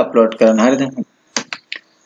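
Two short, sharp computer mouse clicks about a second and a half in, after a man's voice in the first second.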